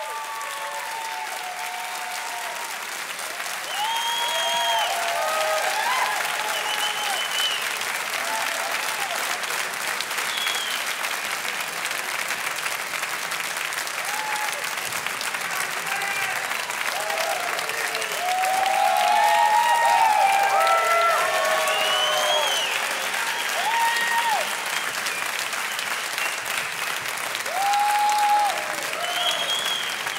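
Concert audience applauding, with scattered shouts and whistles through the clapping, growing louder about four seconds in and again past the middle.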